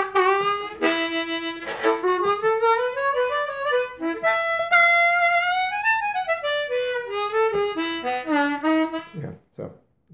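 Hohner Special 20 ten-hole diatonic harmonica played in a bluesy phrase of held notes and bent notes that slide up and down in pitch, stopping about nine seconds in.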